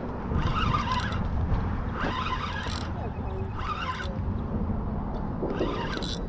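Wind buffeting the microphone: a steady low rumble with a few short gusts of hiss.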